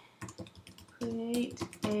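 Computer keyboard keys being typed in quick succession, entering a short phrase. A man's voice says a word over the typing about a second in.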